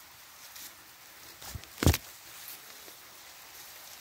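Footsteps through undergrowth with faint rustling, and a sharp, loud thump about two seconds in, just after a smaller one.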